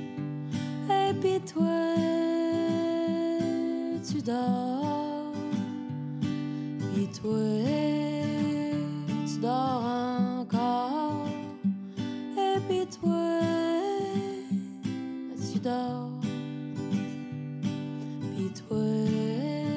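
Acoustic guitar instrumental break in a folk-country song: steady strummed chords under a picked lead melody whose notes slide up and waver in pitch, busiest around the middle of the passage.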